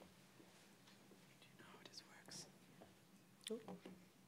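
Near silence with faint, low voices. A short burst of speech comes near the end.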